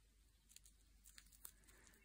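Near silence: room tone with a few very faint soft clicks.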